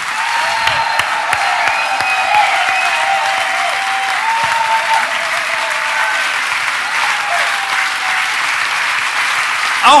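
Theatre audience applauding steadily, a dense, even clapping that holds at one level throughout.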